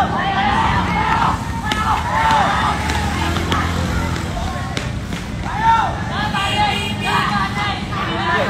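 Men's shouts and yells in bursts over the steady low running of motorcycle engines.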